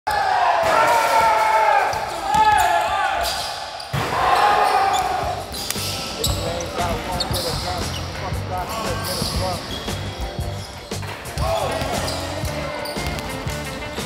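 Basketball bouncing on a hardwood gym court, with short impact knocks, players' shouts and a low music beat underneath.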